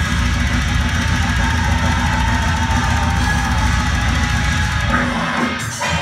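Deathcore band playing live, with heavily distorted guitars, bass and drums in a dense, loud wall of sound. About five seconds in, the low end drops out and the band breaks into short stop-start hits.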